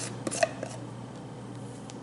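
Plastic screw-top lid being twisted off a jar of sugar body scrub: a few short clicks and scrapes in the first second, the sharpest just under half a second in, then quiet room tone.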